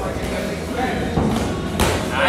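A boxing glove punch landing with one sharp smack near the end, over background voices and shuffling in the gym.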